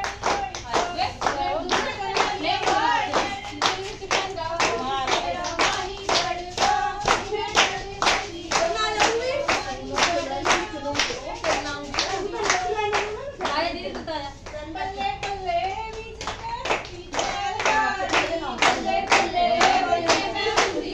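A group of women singing together while clapping their hands in unison, at about two claps a second.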